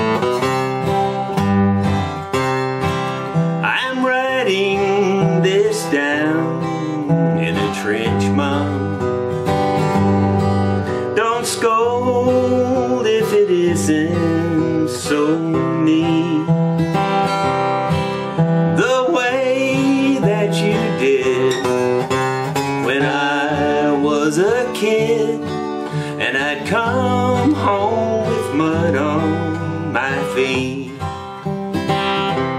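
Gibson SJ-200 jumbo acoustic guitar strummed through an old country song, with a man singing over it, played to show how the restored guitar sounds.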